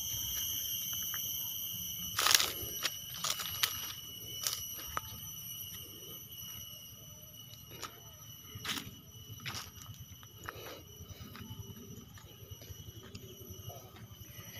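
Steady, high-pitched trilling of insects in a field, fairly quiet, broken by a handful of sharp clicks and knocks, the loudest about two seconds in and more near the middle.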